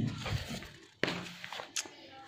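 Hand handling an open paper picture book: soft rustling and light taps on the pages, with a sudden click about halfway through.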